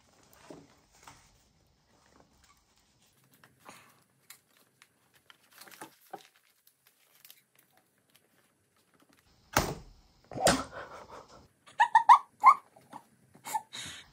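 Faint rustling of paper and thread as a fine beading needle and thick fibre thread are worked through the punched holes of a journal signature, then two sharp knocks about ten seconds in and a quick run of short, louder sounds just after. The needle snaps somewhere in this struggle.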